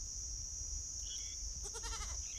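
A farm animal gives a short bleat near the end, over a steady high-pitched insect drone and a faint low rumble.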